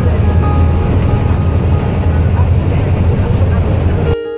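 Road noise heard inside a moving car on a wet highway in the rain: a steady low rumble of tyres with a hiss of spray and rain.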